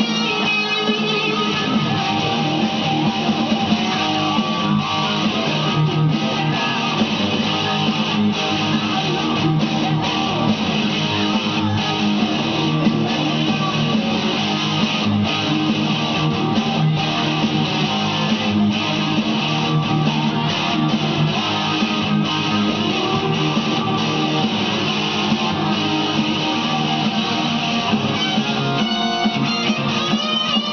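Gibson Les Paul electric guitar playing an improvised lead over a full-band rock backing, continuous and steady in loudness.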